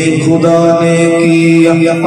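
A man singing a naat, an Urdu devotional song, into a microphone, holding one long sustained note with a small step in pitch about half a second in.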